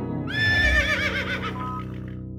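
Horse whinny sound effect: one wavering, trilling call starting about a quarter second in and lasting about a second, with a low thud at its start, over soft background music.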